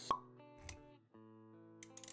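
Background music for an animated intro, holding soft sustained chords, with a sharp pop sound effect just after the start and a shorter, lower hit about 0.7 s in; a new chord comes in a little past one second.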